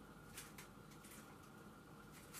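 Near silence: room tone, with a few faint light ticks of handling.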